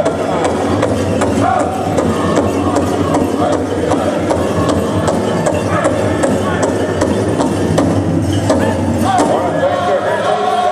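Powwow drum group singing a Grand Entry song, the big drum struck in a steady, even beat under the voices, with the singing lines growing stronger near the end.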